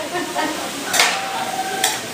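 Potatoes sizzling in a large steaming cooking tray, a steady hiss broken by two sharp utensil clinks, one about a second in and one near the end.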